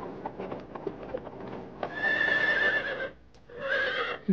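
Horse hooves clopping, then a horse neighing about two seconds in for about a second, with a shorter neigh near the end.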